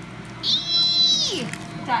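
A woman's high-pitched squeal of pain from a laser tattoo-removal shot, held for about a second and then sliding down in pitch.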